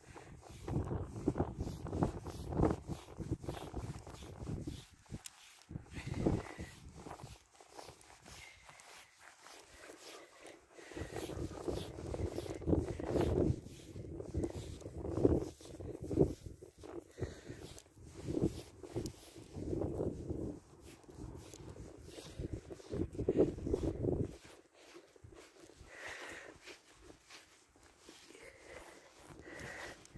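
A grooming comb is drawn through a German Shepherd's thick coat in repeated, irregular strokes. It rasps and rustles close to the microphone, with quieter pauses between bouts.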